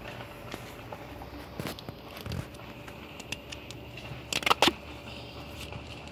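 Duct tape being pulled off the roll and torn, with a short loud rip about four and a half seconds in, amid small crackles of the garden cloth being handled.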